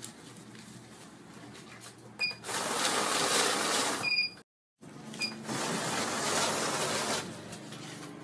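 Electronic banknote counting machine riffling through a stack of notes in two runs of about two seconds each, starting a little over two seconds in, with short high beeps as the runs start and stop.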